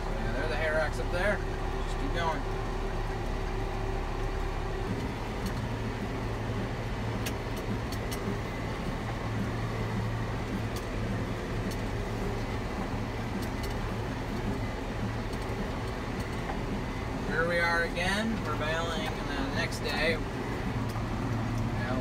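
Tractor engine running steadily, heard from inside the cab as a low drone; one steady tone in it drops away about five seconds in.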